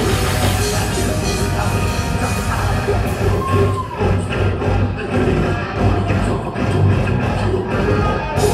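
A technical death metal band playing live, loud and dense: fast drums with heavy distorted guitars and bass. A note swoops up and back down about halfway through, and the second half turns choppy and stop-start.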